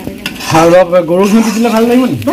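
Spatula stirring and scraping vegetable fried rice in an iron kadai, with frying sizzle. From about half a second in, a person's voice sounds over it and is the loudest thing.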